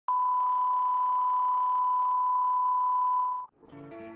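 Steady 1 kHz test tone, the line-up tone that runs under colour bars, held at one pitch and cutting off sharply about three and a half seconds in. Guitar music begins just after.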